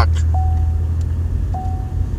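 Low, steady rumble of a moving car heard from inside the cabin, with two short, single-pitch electronic beeps at the same pitch about a second apart, the first slightly longer.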